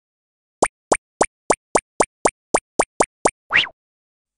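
Cartoon sound effects for an animated intro: eleven quick pops in a row, about four a second, each a fast upward blip, then a single longer rising sound near the end.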